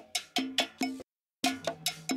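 Isolated percussion track of a cowbell-led Latin-funk groove: a cowbell struck in a quick, even rhythm of about five hits a second, with other hand percussion. The sound cuts out completely for about a third of a second just after a second in, then resumes.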